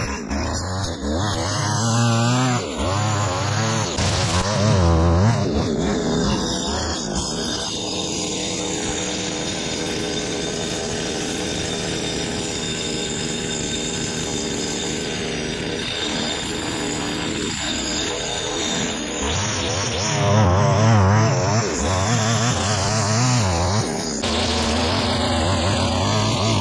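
Petrol string trimmer (Stihl) running and cutting grass and weeds, its engine revving up and down near the start and again in the last few seconds, steadier in between, with background music underneath.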